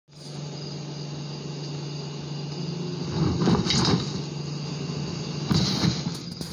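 A steady low hum, with a few rustling knocks about three and a half seconds in and again near the end.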